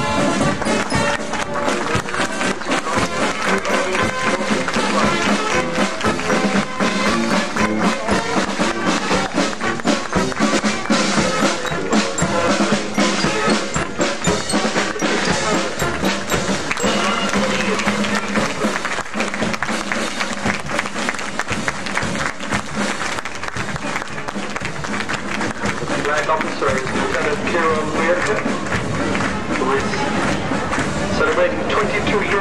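Marching band playing in a street parade, with drums keeping a steady beat and brass, over crowd noise and clapping.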